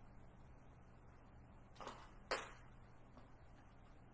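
Near silence with a steady low hum, broken about two seconds in by two brief handling noises half a second apart, the second louder.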